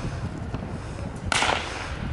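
Starter's pistol fired once, about a second and a half in, a single sharp crack: the signal that starts the race.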